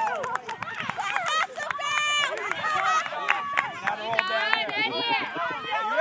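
Many overlapping voices of children and adults calling and shouting across an open field, none close enough for words to be made out.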